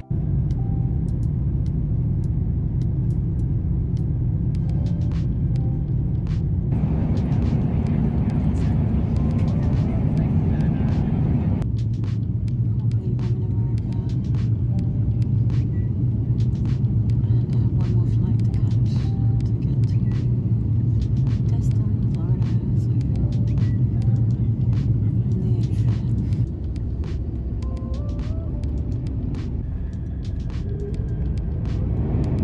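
Steady low rumble of a jet airliner heard from inside the cabin, engines and rushing air. Its tone changes abruptly three times, about seven, twelve and twenty-six seconds in.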